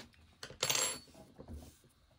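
Brief rustling scrape, about half a second long, as hands pick up and pull a strand of blue t-shirt yarn across the tabletop, with a few light taps around it.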